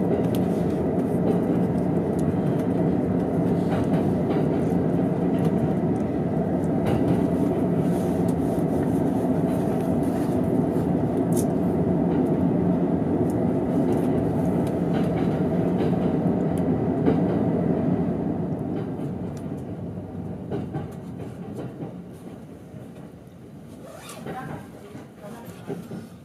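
Running noise of a JR East E231 series train heard from inside a passenger car: a steady rail rumble with scattered clicks. It fades over the last several seconds as the train slows on the approach to its terminus.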